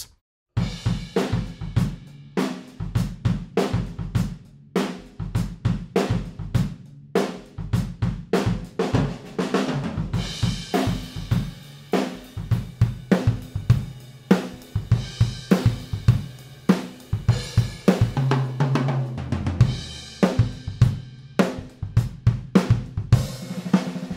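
Acoustic drum kit played in a steady groove of kick drum, snare, hi-hat and cymbals, starting about half a second in. It is recorded by a pair of AEA N8 ribbon microphones set up in ORTF as room mics.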